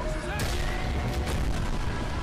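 Combat sound effects from a stick-figure fight animation: several sharp hits and blasts over a low rumble, with faint music underneath.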